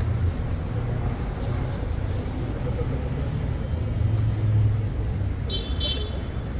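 Steady rumble of city street traffic with indistinct voices around, and a brief high tone near the end.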